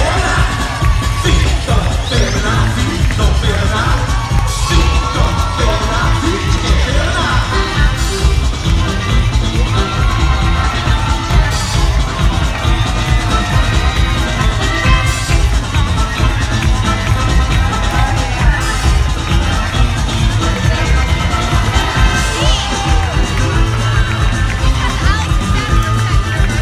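Loud parade music with a heavy, steady bass beat, over a crowd of spectators cheering and shouting. A sharp hit cuts through the music about every three and a half seconds.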